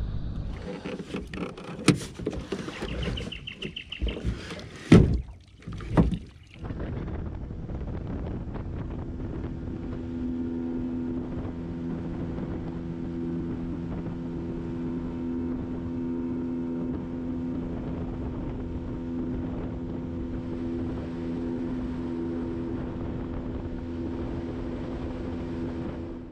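Irregular knocks and splashes over the first six seconds or so, then a boat's engine running with a steady, even hum until just before the end.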